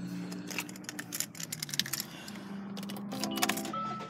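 Irregular light clicks and rustling over a steady low hum inside a car cabin, with a brief pitched sound about three seconds in and a thin steady tone starting near the end.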